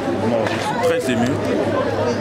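Speech: a man talking, with the chatter of a crowd behind him.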